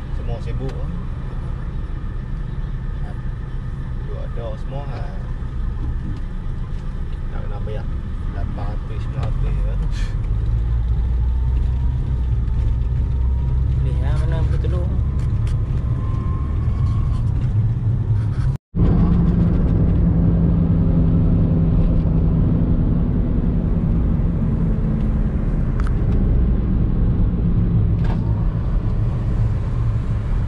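Engine and road rumble of a small car heard from inside the cabin while driving, growing louder about a third of the way in. The sound breaks off for an instant about two-thirds through, then the rumble carries on.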